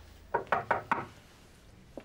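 Knuckles knocking on a wooden door: four quick raps in the first second.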